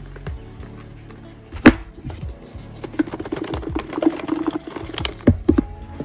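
Hands working at a cardboard album box: rubbing and light tapping, with a sharp knock about a second and a half in and another near the end, over a soft lofi hip-hop music bed.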